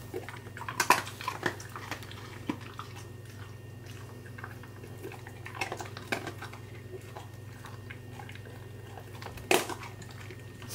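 A husky-malamute crunching dry kibble from a bowl. The crunches and clicks come irregularly, loudest about a second in and again near the end.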